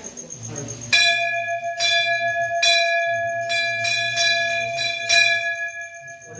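Metal temple bell rung during puja, struck again and again from about a second in, roughly six or seven strokes a little under a second apart, each ringing on into the next.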